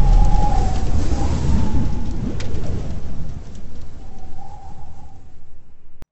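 Thunder rumbling over steady rain as an intro sound effect, dying away gradually; a faint wavering tone sounds twice.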